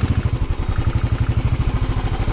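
Motorcycle engine running steadily at low revs with an even pulsing beat.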